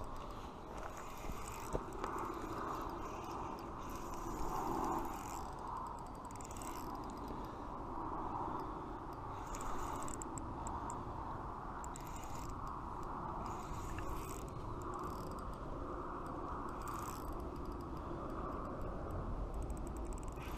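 Quantum Accurist spinning reel being cranked steadily, its gears giving a continuous whir with scattered light ticks, as a hooked trout is reeled in.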